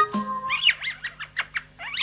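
Bird chirps mixed into a children's song recording: a run of quick chirps starting about half a second in and returning near the end, over a single held low note of the backing music.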